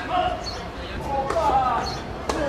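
Tennis ball being struck by rackets in a rally on a clay court: sharp hits about a second in and again shortly after, with voices heard over the play.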